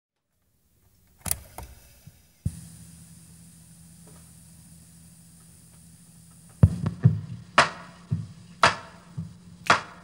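A cassette tape starting in a boombox: a few knocks, then a click, and the tape's steady hiss and hum. About four seconds later a recorded drum-machine beat starts from the tape at about two beats a second.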